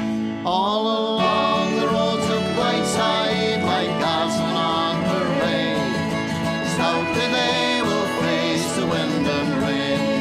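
Instrumental break in a folk song: acoustic guitar and banjo playing under a melody line, with no singing.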